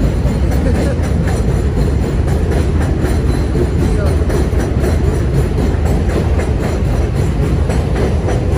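Steady, loud low rumble of an elevated subway train running on the overhead steel tracks.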